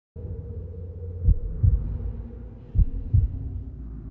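Dark intro sound effect: a steady low drone with a heartbeat over it, two double thumps about a second and a half apart.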